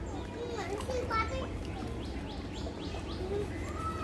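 Children's and other people's voices calling out in the background, with a quick run of short descending bird chirps in the middle.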